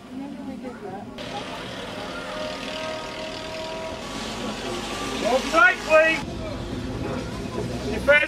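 Open-top tram running on its rails, heard from the top deck, a steady running noise with a faint steady whine; a voice calls out loudly about five and a half seconds in.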